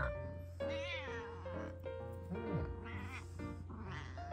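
Tabby cat meowing a couple of times in complaint at being poked and stroked, over soft background music.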